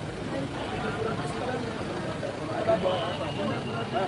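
People talking in the background over steady city street noise.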